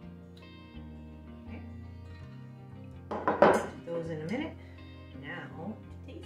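A stainless steel mixing bowl and basting brush clattering as they are handled and set down on a wooden counter, loudest about three and a half seconds in, over background music.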